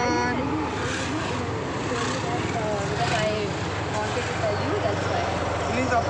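Auto-rickshaw engine running with road noise, heard from inside the open passenger cabin as a steady low hum, with people's voices talking and calling over it.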